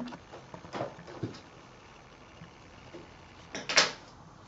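Fabric being handled at a stopped sewing machine: a couple of light clicks in the first second, then a brief, loud rustle near the end as the cloth bag is pulled out from under the presser foot.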